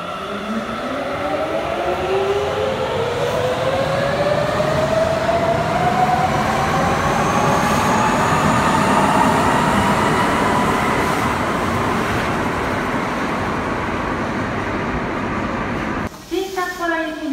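A rubber-tyred Sapporo Municipal Subway train pulling away from the platform: its traction motors whine in several tones that climb steadily in pitch as it accelerates, over a running rumble that grows louder and then eases a little as it leaves.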